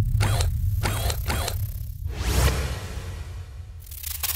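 Sound-design effects for an animated robot, over a low rumbling drone: three short mechanical whirs within about a second and a half, then a whoosh near the middle, and a burst of glitchy digital static just before the end.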